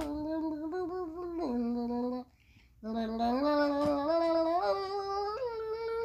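A young girl's voice singing a wordless tune in long held notes that step up and down in pitch, with a short pause for breath about two seconds in.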